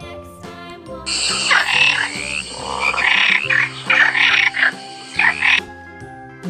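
Frog croaking in a run of loud repeated calls from about a second in until near the end, over soft children's background music.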